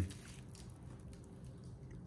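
Low room tone with faint handling noise from an engine wiring harness and its plastic loom being turned over by hand.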